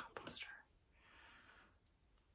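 A woman's soft, whispery speech trails off in the first half-second, followed by a brief faint hiss and near silence.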